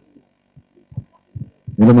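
A man's voice through a handheld microphone: a few soft, low murmurs and thumps, then, just before the end, a loud drawn-out word.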